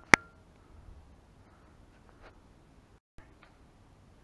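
Two sharp clicks in quick succession at the very start, then faint room tone, broken by a moment of dead silence about three seconds in.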